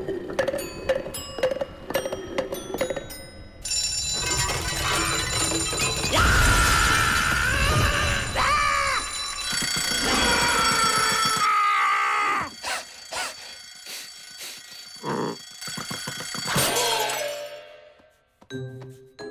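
Cartoon soundtrack: music with regular clicks, then a mechanical twin-bell alarm clock ringing loudly from about three and a half seconds in for roughly eight seconds, with a cartoon cat yelling over it. Scattered short effects follow.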